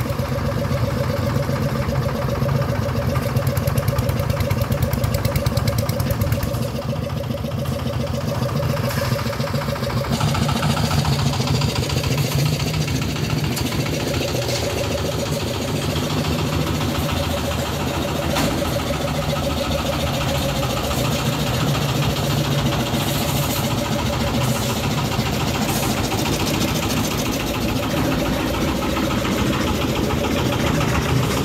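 A site concrete mixer's engine running steadily under load.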